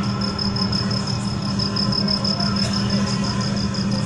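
Steady low electrical hum from an outdoor public-address system left open between sentences, with a thin, high chirp pulsing evenly several times a second.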